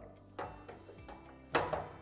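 Drum door flaps of a Proline PTL5511 top-loading washing machine being closed: a light click, then a louder metallic snap about a second later as the door latches shut.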